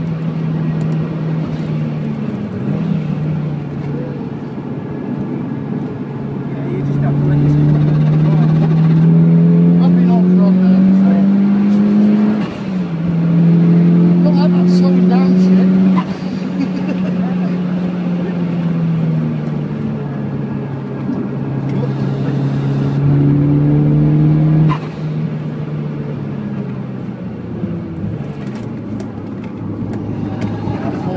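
Mitsubishi Lancer Evolution IX GT wagon's engine heard from inside the cabin under hard throttle on a track lap. Its pitch climbs in long pulls and dips back with brief lifts, then falls away sharply about five seconds before the end as the car slows for a corner.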